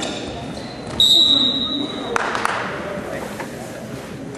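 A referee's whistle blown once, about a second in: one shrill blast of about a second that stops the wrestling. A couple of sharp thumps follow, over a gym's background voices.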